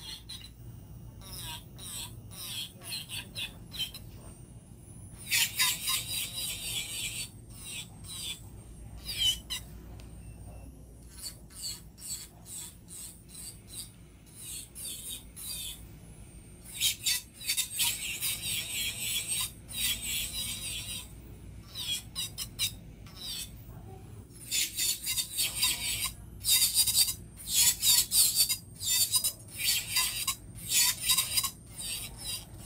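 Nail file rasping on a fingernail near the cuticle in quick back-and-forth strokes, coming in bursts of a few seconds with quieter gaps; the densest, loudest filing is near the end. A low steady hum runs underneath.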